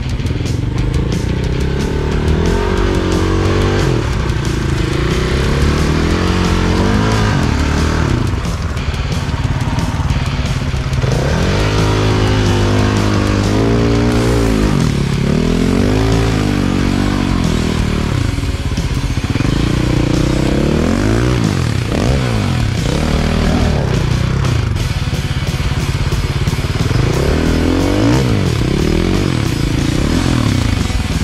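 Dirt bike engine revving up and down again and again while the rear wheel struggles for grip on a steep, loose climb, with rock music playing underneath.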